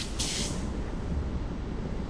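A brief swish of a martial arts gi rustling as the body swings the leg around and rolls back onto the mat, over a steady low background rumble.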